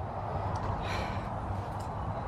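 Outdoor background noise: a low steady rumble, with a short breathy rustle about a second in.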